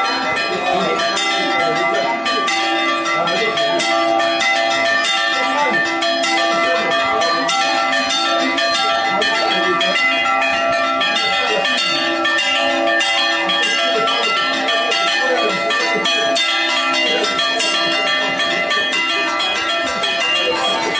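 Church bells rung by hand in the belfry: several bells struck in a rapid, unbroken peal, each strike overlapping the ringing tones of the others.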